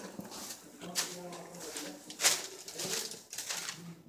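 Footsteps crinkling on plastic drop cloths over the floor, with a sharp crackle a little past halfway. A low, hum-like voiced sound comes about a second in and briefly near the end.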